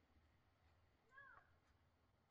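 Near silence: room tone, with one faint short call a little past a second in that rises and then falls in pitch.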